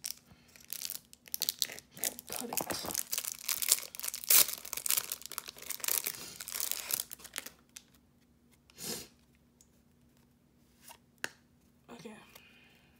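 Clear plastic wrapper of a trading card pack crinkling and tearing as it is slit and pulled open, a dense crackle for about seven seconds. After that come a brief rustle and a couple of light clicks.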